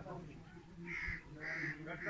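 A bird giving three short, harsh calls about half a second apart, starting about a second in.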